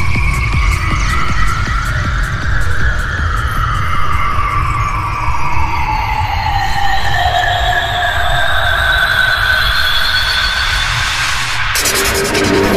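Dark psytrance music: a fast, dense rolling bass line under synth sweeps that glide slowly up and down in pitch. Near the end the bass drops out for a moment as a new section comes in.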